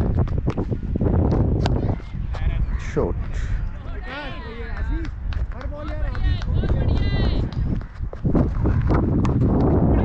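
Wind rumbling on an action camera's microphone on an open cricket field, with scattered sharp knocks. A few short high calls come about four to seven seconds in.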